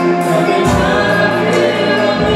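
A small group of men and women singing a gospel praise song together into microphones, with electronic keyboard accompaniment, amplified through a PA system.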